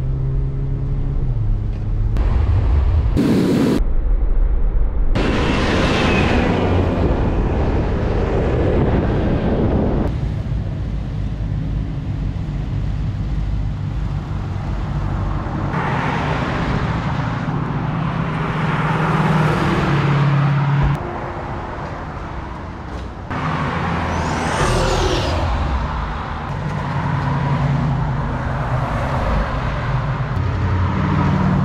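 Cars, among them V8 muscle cars, driving past one after another with their engines revving as they pull away. The sound changes abruptly several times as one pass cuts to the next.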